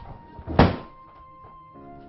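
A single heavy thunk just over half a second in, the loudest sound, over a background film score with a held high tone. Near the end a soft, sustained wind-instrument melody comes in.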